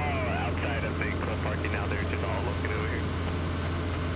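Super Decathlon's engine and propeller running steadily in cruise flight, heard as an even drone inside the cockpit. A faint voice sits underneath in the first few seconds.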